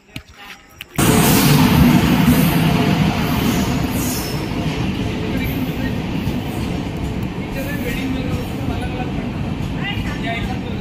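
Indian Railways passenger train running in alongside the platform: a loud, steady rumble and rush of wheels and coaches that starts suddenly about a second in, with voices of people on the platform.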